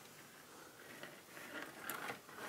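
Quiet room with faint scuffing and a few light ticks as a thin endoscope cable is pulled back across the floor.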